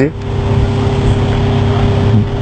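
A steady, loud low rumble with a constant hum, like a motor running without change.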